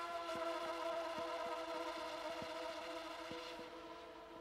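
Trumpet holding one long, reverberant note whose upper overtones die away near the end, with faint soft ticks about three times a second underneath.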